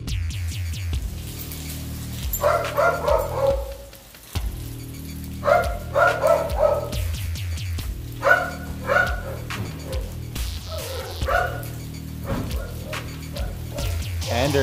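German Shepherd barking in short runs of two to four barks, four runs in all, over background music with a steady bass.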